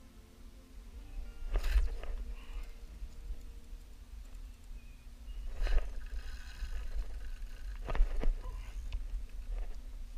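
A low rumble of wind on the microphone, broken by several short bursts of rustling and knocking from an angler handling a fishing rod, the loudest about a second and a half in and near eight seconds in. Faint background music runs underneath.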